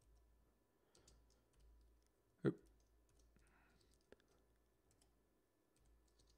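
Faint, scattered clicks of computer keyboard keys being typed, a few quick ones together and then single taps spread apart.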